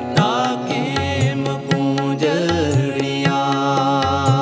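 Sikh Gurbani kirtan: a man singing a shabad in gliding, ornamented phrases over sustained harmonium chords, with tabla strokes keeping the beat.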